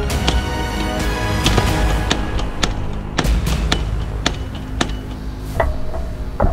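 Background music over the blows of a homemade treadle-operated forging hammer striking a red-hot blade on its anvil, an irregular string of sharp strikes about two a second.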